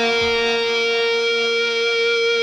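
Rock music: a single guitar chord held and ringing out, with no drum hits.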